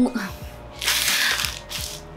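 A burst of crinkling, rustling noise lasting about a second, starting just before the middle, over faint background music.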